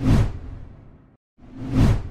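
Two whoosh sound effects from an animated transition graphic, each with a low boom, swelling quickly and then fading. The first dies away about a second in, and the second swells up near the end.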